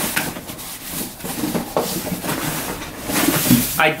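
Hands rummaging inside a cardboard box, rustling and scraping against paper and cardboard, with a few light knocks.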